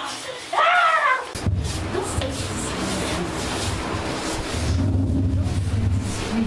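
A brief high cry from a voice, rising and falling, then an abrupt cut to loud background music mixed with voices over a heavy low hum.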